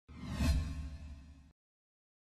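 Whoosh transition sound effect with a low rumble, swelling to a peak about half a second in and dying away by a second and a half, then silence.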